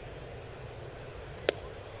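Steady ballpark crowd hum with one sharp pop about one and a half seconds in: the pitch smacking into the catcher's mitt on a swing and miss.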